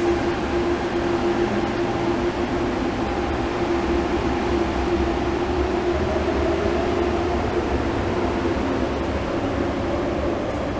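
Airport shuttle train running on the track behind glass platform screen doors: a steady whine over a low rumble, the whine fading about seven seconds in as a higher tone rises.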